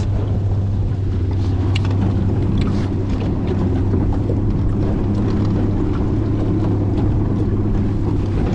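Jet-drive outboard motor running steadily under way, with an even, low engine hum as it pushes a flat-bottom jon boat across the water.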